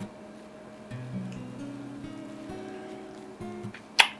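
Soft background music of plucked guitar notes, held and changing one after another.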